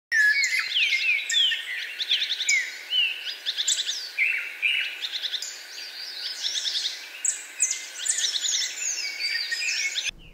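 Several songbirds singing and calling over one another: clear whistles, down-slurred notes and quick trills, overlapping with no let-up.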